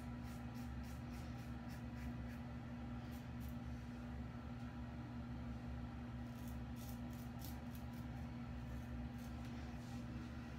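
Above The Tie M1 double-edge safety razor with an Astra SP blade scraping through lathered stubble on the neck in short, quick strokes, in two runs of strokes with a pause between, over a steady low hum.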